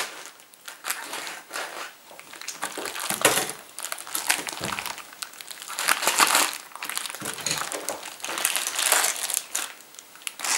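Clear plastic wrapper on a large joint of beef crinkling and rustling in irregular bursts as a knife cuts through the wrapped meat and hands pull the plastic back.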